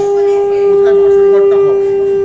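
Conch shell (shankha) blown in one long, loud, steady note, as is customary during Bengali wedding rites.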